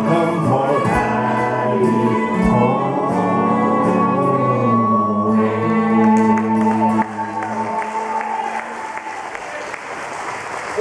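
A live Celtic band (fiddle, mandolin-family string instrument and acoustic guitar) plays the closing bars of a tune. They end on a held chord that dies away about seven or eight seconds in, and audience applause follows.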